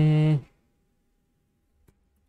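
A man's steady hummed "hmm", held at one pitch for about half a second, then quiet with a single faint click near the end.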